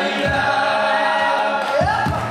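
Live band with several voices singing a long held note in harmony, the voices gliding up into the next phrase near the end, over two low drum beats.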